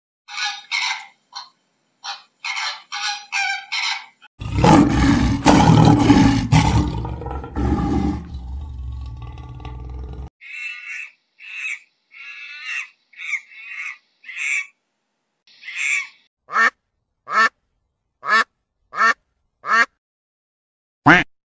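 A string of animal calls in separate takes. First come quick clusters of short high calls. Then a loud, low growl lasts about six seconds, with lionesses in view. After more short high calls, a run of honking calls ends the stretch, about one a second, each falling steeply in pitch.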